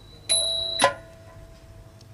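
Small metal percussion of a nang talung shadow-puppet ensemble: one bright ringing stroke about a third of a second in, damped with a sharp click just before one second.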